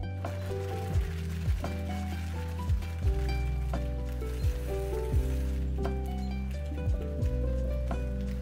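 Blender pulping guava chunks with ice, heard as a steady hiss that stops about six seconds in, under background music with a deep kick-drum beat.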